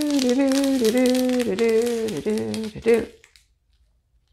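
A woman humming a few held notes of a tune, with light crinkling of thin plastic packets of diamond-painting drills; the humming stops about three seconds in.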